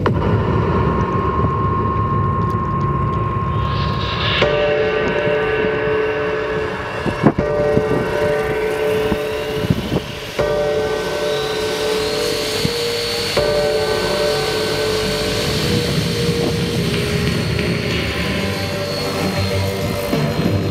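Radio-controlled model helicopter spooling up: a whine rises from about eight seconds in and levels off at about twelve seconds, holding steady as the rotor reaches flying speed. Music plays alongside, with a couple of sharp knocks around the middle.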